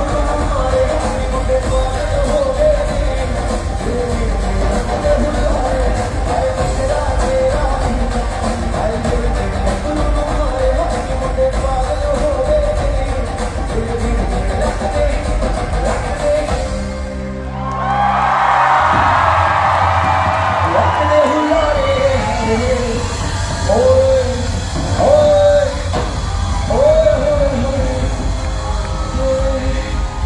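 Live pop concert: amplified music with heavy bass and a male singer, with the audience cheering. The music breaks briefly a little past halfway, and the crowd's cheering swells right after.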